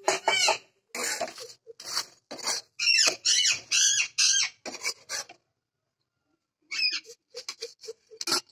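Pet parrot squawking in a string of short, shrill calls that bend up and down in pitch, loudest a few seconds in. The calls stop for about a second, then resume as shorter calls near the end.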